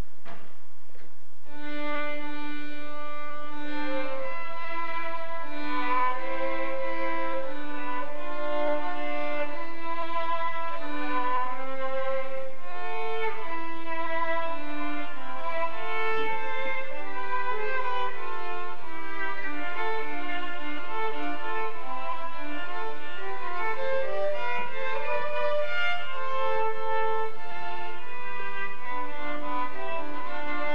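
Two violins playing a duet, a higher moving line over a lower part of longer held notes.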